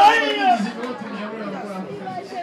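A man's voice over the PA ends a drawn-out call about half a second in, then the level drops to crowd chatter in a large room.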